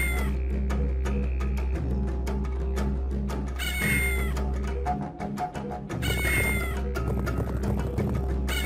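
A cat meowing three times, about every three to four seconds, over children's background music with a steady beat.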